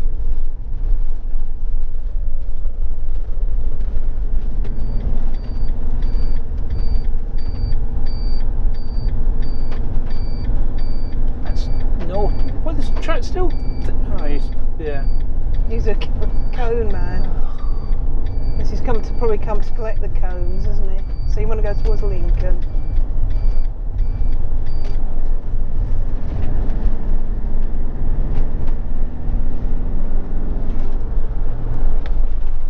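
Steady low rumble of engine and road noise inside a motorhome's cab as it drives round a roundabout and on along the road.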